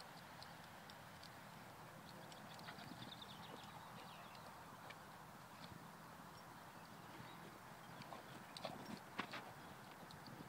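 Near silence: faint outdoor background hiss with scattered faint clicks and ticks, a few sharper ones about nine seconds in.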